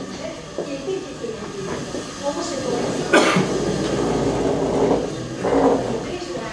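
Indistinct voices murmuring in a meeting hall. About three seconds in there is a sharp knock, followed by a couple of seconds of rustling noise and another short burst of noise near the end.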